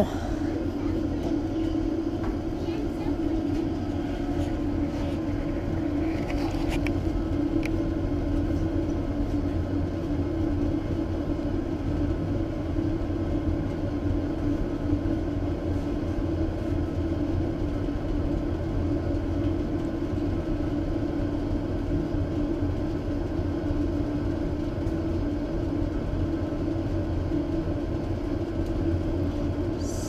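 Waste oil furnace running and heating up, a constant low drone from its burner with a few faint clicks a few seconds in.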